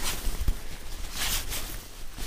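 Nylon tent mesh and fabric rustling and scraping as the hooped bug-fly panel is stuffed by hand into a ceiling pocket, irregular with a brighter swish about a second in.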